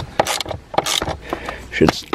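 Socket wrench working a bolt in a snowmobile's engine bay: a run of irregular sharp clicks and metal knocks.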